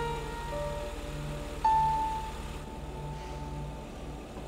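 Background score music of held, sustained notes, with a louder high note entering about one and a half seconds in and slowly fading, over a steady low rumble.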